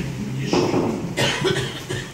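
A person coughing twice in a church, short sudden coughs about half a second and a second in.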